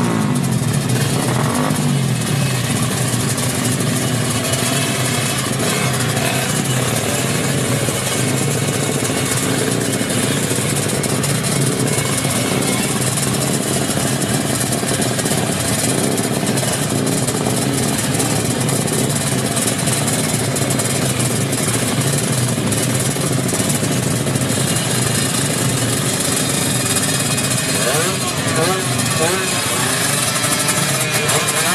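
Motorcycle engines idling steadily amid crowd chatter. A rev dies away at the start, and the throttle is blipped again near the end.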